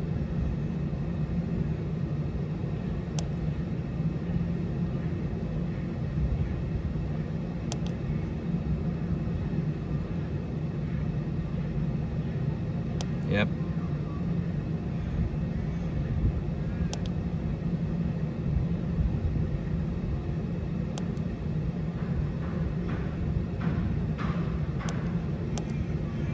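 Steady low hum of a Temperzone OPA 550 package unit's indoor fan blower running, with a few faint clicks from the UC8 control board's push button being pressed.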